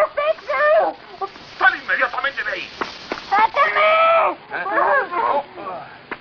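A man's voice making wordless cries and whimpers in quick bursts, its pitch bending up and down, with a few short clicks among them.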